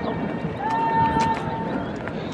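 A drawn-out shouted drill command, held on one steady pitch for about a second, over background crowd chatter.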